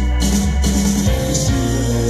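Live band music, loud and continuous: electric guitar over a stepping bass guitar line, with a rattling, shaker-like percussion in the mix.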